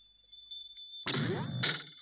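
Cartoon comedy sound effects for a character keeling over backwards. A faint, high, steady ringing tone gives way about a second in to a sudden thud with a rising sweep, followed by a sharp crash.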